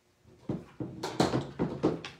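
A clear plastic bag of cut vinyl pieces picked up and handled, crinkling in a run of sharp rustles that starts about half a second in.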